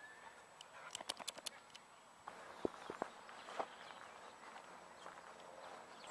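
Faint outdoor ambience in an open field, with a quick run of small clicks about a second in and a few scattered knocks after that.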